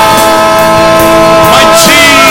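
A congregation singing a worship hymn with a band playing along, holding one long note that moves on near the end.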